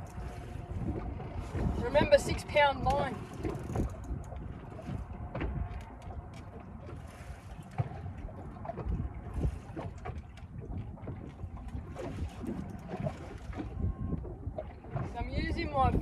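Wind and water noise around a small boat drifting on open water, a steady low rumble, with brief voice sounds about two seconds in and again near the end.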